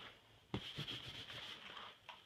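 Damp cloth rag rubbing over a leather sofa's sanded filler patch, wiping off the sanding dust: a short scrubbing that starts with a sharp knock about half a second in and stops just before the end.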